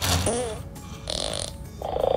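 Cartoon fart sound effects from the programmed Lego Boost cat robot's app, played twice: a wobbly, pitched one at the start and a shorter, buzzier one about a second in.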